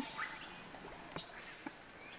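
Steady, high-pitched chorus of rainforest insects, with a faint click about a second in.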